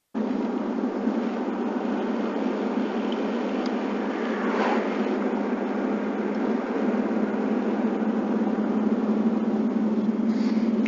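Steady road and engine noise inside a moving truck's cab, starting abruptly, with a brief swell in the hiss about halfway through.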